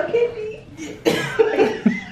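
A woman's voice in several short, loud bursts, starting about a second in, after a moment of talk.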